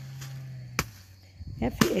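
Machete chopping into a felled banana trunk, a soft, wet, water-filled stem: two cuts about a second apart, the second louder, near the end.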